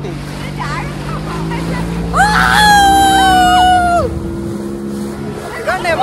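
A 60 hp outboard motor drives a speedboat at speed, running steadily throughout. About two seconds in, a person gives one long, high yell lasting about two seconds, which is louder than the engine.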